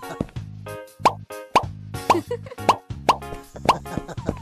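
Children's cartoon background music with a short rising plop about twice a second.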